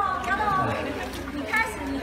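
Several people talking at once, casual chatter with overlapping voices.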